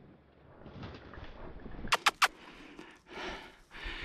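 Rustling of dry scrub as a hunting dog pushes through the brush on a retrieve, with three sharp clicks in quick succession just before the midpoint.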